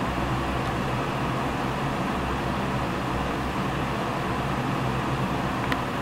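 Steady room background noise: an even hiss over a low hum, with no distinct events.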